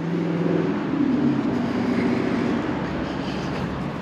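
Road traffic: the steady hum of a passing vehicle's engine over road noise, fading out near the end.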